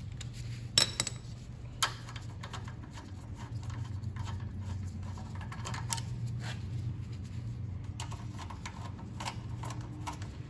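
Scattered metallic clicks and clinks of hand tools and small parts as the ten-millimetre bolts and air-cleaner parts come off a Honda GX200 engine, the two sharpest about one and two seconds in, over a steady low background hum.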